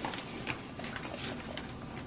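Battered chicken wings deep-frying in hot oil in a cast iron Dutch oven: a steady sizzle with many small irregular pops and crackles, the oil hot enough to bubble hard around the meat.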